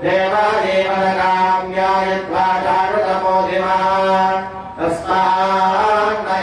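A voice chanting a Hindu devotional mantra in long, sustained phrases, pausing briefly about two seconds in and again near five seconds, over a steady low hum.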